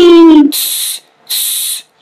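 Vocal sound effects: a loud, held hooting tone that slides slowly down in pitch, then two short hisses.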